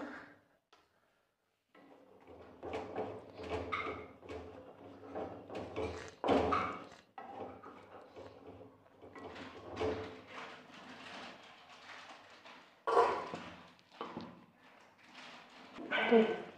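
A spatula stirring black chickpea curry in a nonstick pan, giving irregular scraping and knocking sounds.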